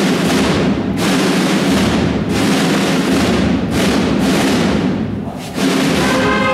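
Marching-band snare and bass drums playing rolls, in phrases broken by brief dips about every second and a half: the drum introduction of a processional march, before the brass comes in.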